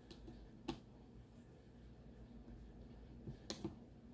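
A few faint, sharp clicks and taps from small objects being handled on a work surface: one a little under a second in, then three in quick succession near the end.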